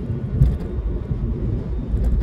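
Steady low rumble of a car driving at road speed, heard from inside the cabin.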